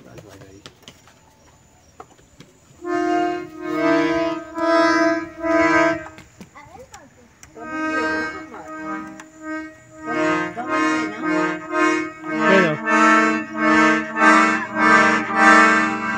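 Piano accordion (sanfona) played in pulsed chords, starting about three seconds in after a quiet opening. After a short break it settles into a steady run of chords, about two a second, getting louder toward the end.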